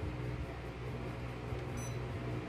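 Split-type air conditioner indoor unit running with a steady low hum and hiss, and one short high electronic beep near the end.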